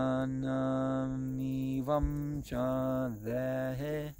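A man chanting Vedic Sanskrit verse in long held syllables on a nearly level pitch, with a short break about two seconds in and a slight drop in pitch near the end.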